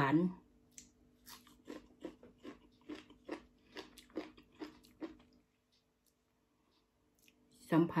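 A person chewing a mouthful of raw vetch shoots (Vicia sepium), about two to three chews a second, stopping abruptly about five seconds in. A faint steady hum lies underneath.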